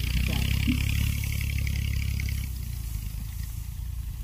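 A steady low engine hum runs throughout. For the first two and a half seconds it is joined by a faint rustling of a dry thorny branch being dragged through rice stubble.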